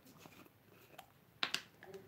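Faint handling noises on a work table: a light click about a second in and a sharper tap about a second and a half in, as small craft items such as a paint bottle are picked up and set down.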